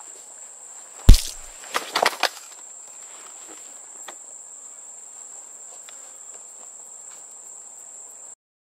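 A single loud pistol shot about a second in, followed by a few softer crashes, over a steady high-pitched insect drone.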